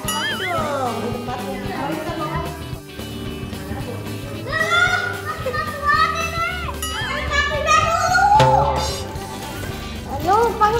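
Two young children talking to each other in high voices, with background music underneath.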